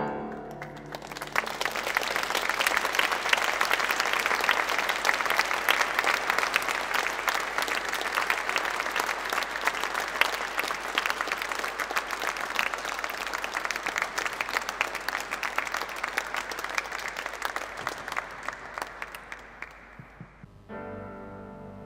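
Audience applauding at a live concert: the clapping swells up in the first second or two as the last piano notes die away, holds steady, and thins out near the end.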